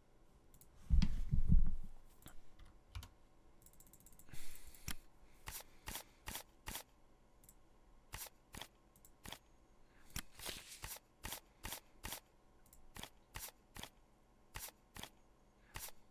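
Computer mouse and keyboard clicks, short and sharp, coming about two a second from about five seconds in. There is a louder low thump about a second in.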